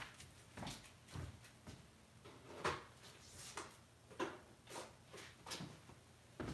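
Faint, irregular light taps and knocks, one or two a second, from small objects being handled on a desk; the strongest comes about two and a half seconds in.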